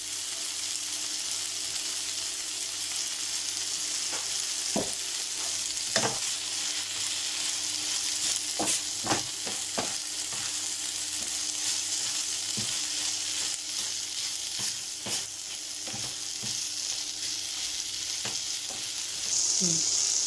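Salagubang (June beetles) sautéing with tomatoes in a frying pan: a steady sizzle, with a wooden spatula stirring and now and then knocking or scraping against the pan.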